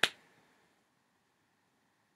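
A brief breathy hiss right at the start, then near silence: quiet room tone.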